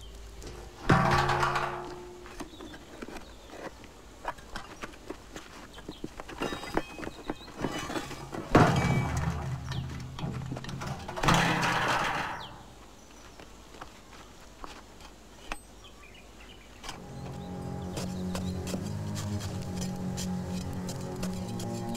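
Film soundtrack: three heavy dramatic hits, each dying away over a second or so, with scattered small clicks and scrapes of earth between them; near the end, musical score with held tones fades in.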